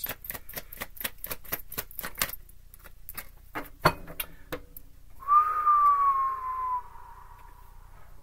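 Tarot cards being shuffled by hand: a quick run of light card clicks, about five a second, for the first two seconds, then a single sharper tap near four seconds in. A held tone follows, sliding slightly down in pitch for about two seconds.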